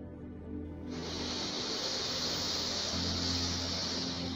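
Soft ambient music with a steady low drone; about a second in, a long breathy hiss begins and lasts about three and a half seconds: a slow, deep out-breath paced for a relaxation breathing exercise.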